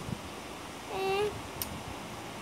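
A child's short wordless vocal sound, falling then held, about a second in, with a faint click just after it, over steady low room noise.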